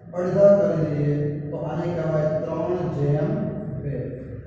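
A man's voice speaking in a drawn-out, sing-song way, in long held phrases of about a second and a half each.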